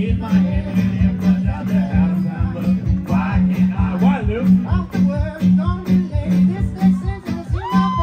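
Live fiddle and acoustic guitar playing an instrumental passage over a steady low pulsing beat, with sliding notes and one long held note near the end.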